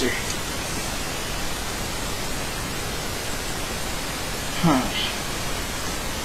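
A steady hiss with no rhythm or tone in it, with a short spoken "huh" near the end.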